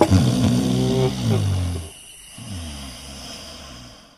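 A man's wordless vocal groans, loud and drawn out, the later one sliding down in pitch; the sound fades out at the end.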